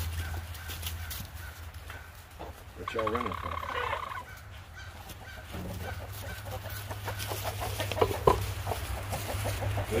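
Domestic chickens clucking, with a loud squawking call about three seconds in and more short calls near the end, as the flock runs for cover: alarm calls of the kind given when a predator may be coming in.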